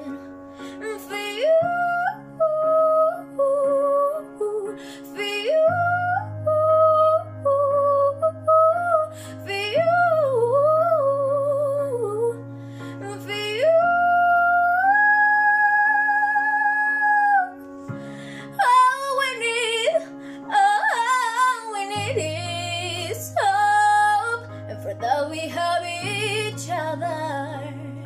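A girl's solo singing voice over a backing of sustained chords that change every few seconds. About halfway through she holds one long note with vibrato on the word "you".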